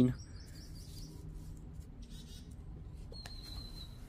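Faint bird chirps over quiet outdoor ambience: two short high chirping bursts, then a thin, steady high whistle near the end.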